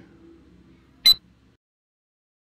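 A single short, sharp beep-like click from the phone's wallet app as it registers a scanned QR code, about a second in, over faint room tone; the sound then cuts out completely.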